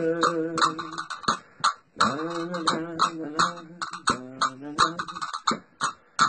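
A man singing unaccompanied in a low voice, holding long notes in short phrases without clear words, with a brief break a little before two seconds in. Sharp clicks are scattered through the singing.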